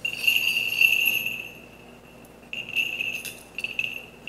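Small bells on a swung censer's chains jingling in two runs: one ringing shake at the start, then several quicker jingles from a little past halfway.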